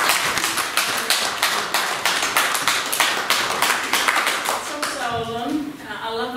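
Audience applauding: many hands clapping, dense and loud, thinning out about five seconds in as a woman's voice begins.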